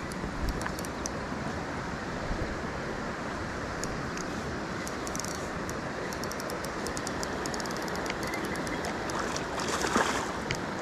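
Steady rush of flowing creek water, with scattered faint clicks.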